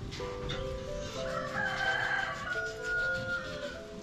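A rooster crows once, starting about a second in and ending on a held note, over background music with steady held notes.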